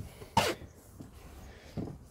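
A man's single short cough about half a second in.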